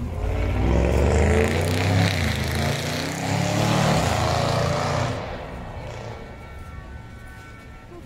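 A motor vehicle driving past close by: engine and tyre noise swell in quickly, stay loud for about five seconds with the engine pitch shifting, then fade away.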